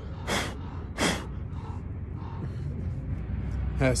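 Two short, sharp sniffs through a runny nose, under a second apart, over a steady low background rumble.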